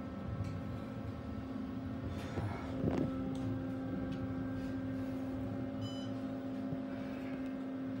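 Otis hydraulic elevator car riding down, a steady hum that grows louder and steadier after a light knock about three seconds in. A short electronic chime sounds just before the six-second mark as the car nears the lobby.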